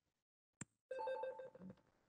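A single click, then a faint electronic ringing tone lasting under a second.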